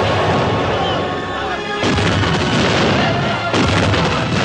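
Cannon fire and shells bursting against a stone tower in a film battle soundtrack, over a continuous din, with sudden blasts about two seconds in and again near the end.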